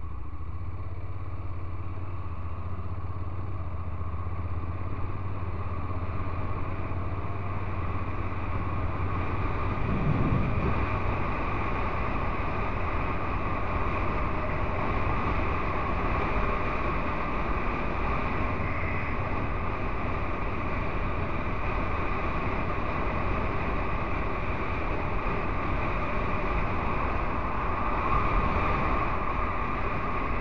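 Honda NC750X DCT motorcycle's parallel-twin engine running at a steady cruise of about 67 km/h, blended with steady wind and road noise. There is a brief rise in pitch about ten seconds in.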